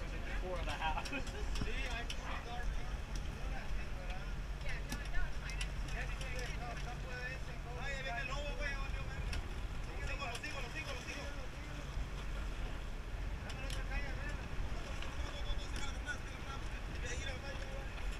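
A boat engine runs with a steady low drone under wind and water noise, and there is a brief knock about five seconds in.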